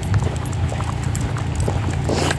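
Footsteps on a tarmac car park, a few faint short steps over a steady low rumble.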